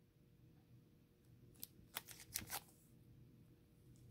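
Near silence, with a short cluster of faint clicks near the middle from a clear plastic card holder being handled and turned over in the hands.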